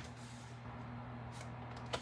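Quiet handling of cardstock on a paper trimmer, with small clicks near the start and just before the end, over a steady low hum.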